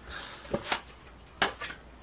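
Scratch-off lottery tickets being handled on a wooden tabletop: a soft sliding of card, then a few light clicks and taps in two quick pairs.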